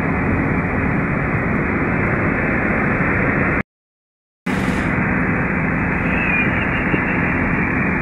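Steady road and engine noise heard inside a car's cabin while driving at highway speed. About halfway through, the sound drops out completely for under a second, then resumes unchanged.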